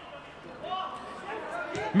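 Faint match sound from the pitch of a football game: distant voices of players calling out over a low, steady background hiss.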